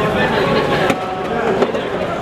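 Indistinct chatter of several voices, with a single sharp knock about a second in.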